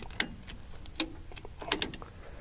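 Ratchet strap's ratchet clicking as its handle is cranked, the strap wound onto itself and drawing tight: a handful of sharp clicks at uneven intervals, several close together near the end.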